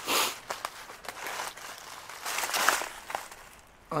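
Footsteps crunching through dry fallen leaves and twigs, about three steps with small snapping clicks between them.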